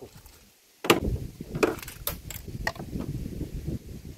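A sharp knock about a second in, then several lighter clicks and knocks over a low rumble: handling noise as a freshly landed traíra is held and moved about in an aluminium fishing boat.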